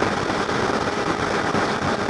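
Motorcycle riding at highway speed: steady engine and wind noise on the microphone.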